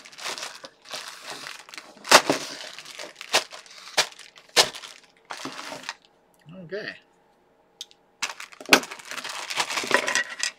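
Clear plastic packaging bag crinkling and crackling as it is handled and pulled open, in a run of sharp rustles. The sounds stop for about two seconds near the middle, then start again.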